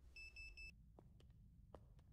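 Three short high electronic beeps in quick succession from a door's keypad lock being keyed in, followed by a few faint clicks.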